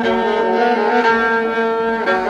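Instrumental passage of a Persian music recording: bowed strings play held notes in a dense, steady ensemble texture.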